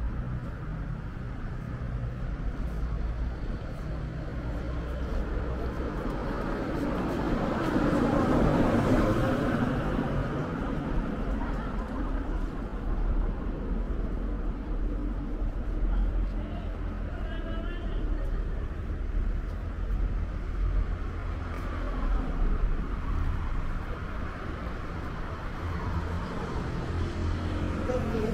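Street traffic beside a roadway: a steady low rumble, with a vehicle swelling past about a third of the way in. Voices come up near the end.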